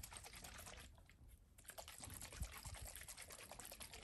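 Faint sloshing of water and E85 fuel being shaken in a small capped ethanol tester bottle, with quick light ticks and a short pause about a second in. This is the mixing step of an ethanol-content test, shaking the fuel so its ethanol separates into the water.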